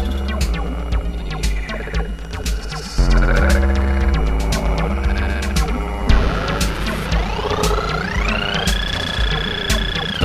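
Acid electronic music: a steady low bass pulse with sharp percussion ticks. From about seven seconds in, a synth note slides upward in pitch and then holds high.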